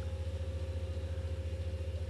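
Steady low hum with a faint higher steady tone, pulsing with a rapid, even flutter of roughly a dozen beats a second.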